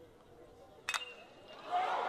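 A metal baseball bat striking a pitched ball about a second in. One sharp ping with a brief ring, over faint stadium ambience.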